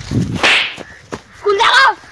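A sharp whooshing swish, like a dubbed whip-crack punch effect, about half a second in as the two trade blows, followed by a short shout near the end.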